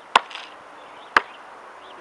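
Basketball being dribbled: two sharp bounces about a second apart.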